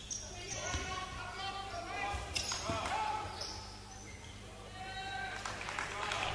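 Live basketball court sound in a large gym: a basketball dribbled on the hardwood floor, with players calling out faintly in the background.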